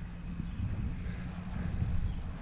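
A low, steady rumble with no distinct events.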